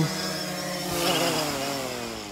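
Quadcopter drone's propellers buzzing, then falling steadily in pitch and fading as the motors spin down after landing.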